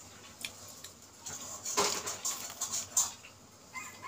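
Crisp fried papad being bitten and chewed: a quick run of sharp, crackly crunches starting about a second in, loudest about two seconds in, then tapering off.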